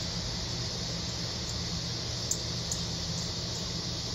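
Steady outdoor background hum and hiss with no distinct event, broken only by two faint clicks a little past the middle.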